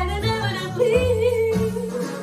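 Young female vocalist singing a pop song over instrumental accompaniment with a low bass line. She holds one long note with vibrato about a second in.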